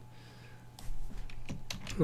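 Computer keyboard keys clicking: a quick, irregular run of clicks starting about a second in, after a quiet start.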